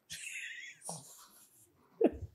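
A woman's quiet, breathy laugh: an airy, unvoiced exhale of about half a second, with a fainter breath about a second in.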